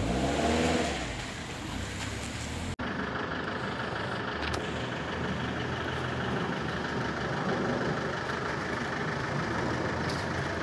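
A car engine heard in the first second or so, its pitch rising and falling. After an abrupt cut, steady outdoor street noise follows.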